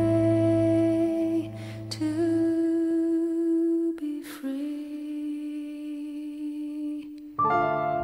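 Slow, soft ballad music of long held notes that change pitch every few seconds.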